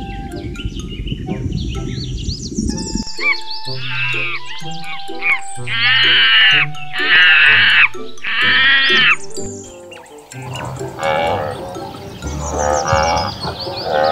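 Background music with a steady bass line; over it, from about three seconds in, a macaque's shrill calls, loudest three times in the middle, then softer ones.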